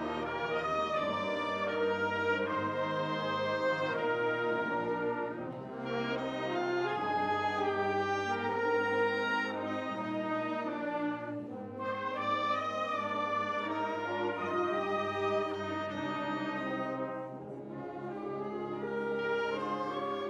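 High school concert band playing a piece with sustained full chords and the brass to the fore. The phrases are broken by short dips about every six seconds.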